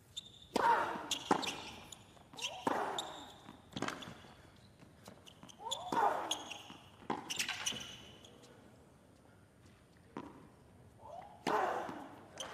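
Tennis rally on a hard court: sharp pops of the ball off racket strings and its bounces, roughly one a second, with a player's short grunt on several strokes. The point ends with an overhead smash near the end.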